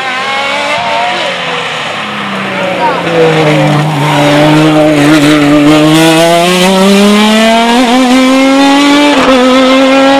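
Open-top racing sports-prototype engine passing close and pulling away up a hill climb road; its note dips as it goes by, then rises steadily as it accelerates away.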